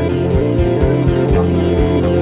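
A band playing an improvised instrumental rock jam: guitar over a steady low bass line and a regular drum beat.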